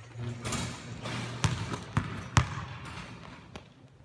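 Basketball bouncing on a gym's hardwood floor: three sharp bounces about half a second apart near the middle, over a steady low hum.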